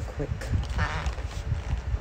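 A woman's voice: the word "quick", then, about a second in, a short, wavering, high-pitched vocal sound.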